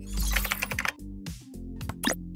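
Computer-keyboard typing sound effect: a quick run of key clicks, a short pause, then a few more clicks, laid over intro music with a deep bass note.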